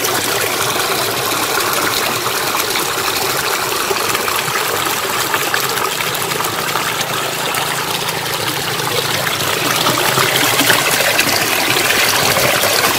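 Water pouring steadily over a small man-made sluice into a concrete channel, a continuous splashing rush that grows a little louder near the end. The outflow is the draining of a ragworm (rươi) pond for harvest.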